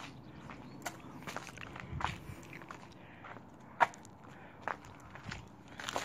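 Footsteps on a rubble-strewn floor: irregular steps and scattered knocks and crunches of debris underfoot.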